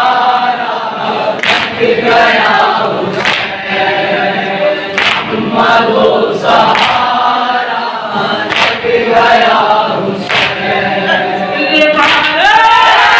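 A group of men chanting a nauha, a Shia mourning lament, in unison. Sharp chest-beating strikes of matam fall on the rhythm about every second and three quarters.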